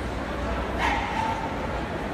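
A dog gives one sharp bark a little under a second in, over a steady background of people's voices.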